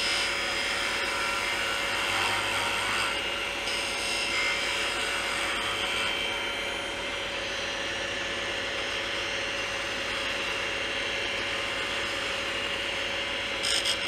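Wood lathe running steadily while a parting tool, held like a skew, shaves a small bocote tenon down to size: a constant motor hum with the light sound of the cut over it.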